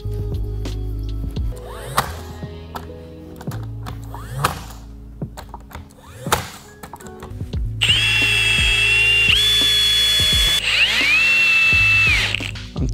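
A Milwaukee cordless drill running from about two thirds of the way in: a loud, steady high whine that shifts pitch once and then dips and rises again near the end. Before it come a few single sharp snaps of a cordless brad nailer firing brads into the wood.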